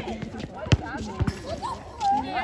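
A soccer ball thumping off a foot or the hard court: one sharp thud about two-thirds of a second in and a softer one about half a second later, with players' shouts around them.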